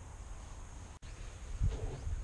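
Outdoor background noise, mostly a steady low rumble such as wind on the microphone, cut off briefly about a second in and followed by a soft low thump near the end.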